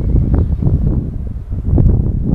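Wind buffeting the camera's microphone, a loud, steady low rumble, with a few short rustles or knocks from the handheld camera.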